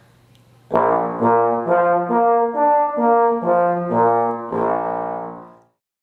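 Trombone playing a run of notes from its harmonic series with the slide held in one position, slurring from note to note up the series and back down. The notes start about a second in, and the last one dies away shortly before the end.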